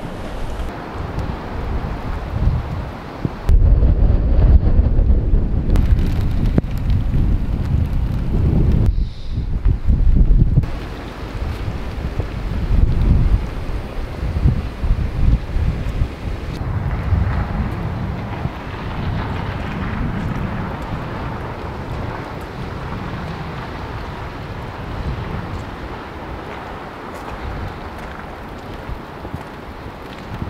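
Gusty wind buffeting the microphone, a loud low rumble that rises and falls and changes abruptly a few times in the first half before settling to a weaker, steadier blowing.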